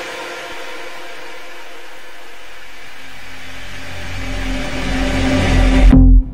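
Future house build-up: a held synth chord with a hiss-like wash fades down, then a deep bass note and a steady synth tone swell in and the music rises steadily in loudness toward the drop, cutting out for an instant at the very end.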